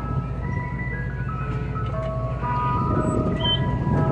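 Mister Softee ice cream truck's chime music playing, a run of single bell-like notes stepping up and down, over the steady low rumble of the truck's running diesel engine.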